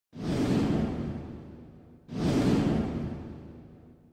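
Two whoosh sound effects from an animated title intro. Each swells up quickly and fades away over about two seconds, the second starting about two seconds in.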